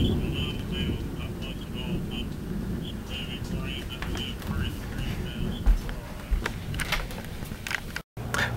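Low rumble of a thunderstorm dying away, with faint high, quick repeated notes over it for the first five seconds or so. A few knocks of the camera being handled near the end.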